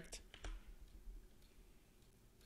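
A few light computer-input clicks in the first half second, then near silence: faint room tone.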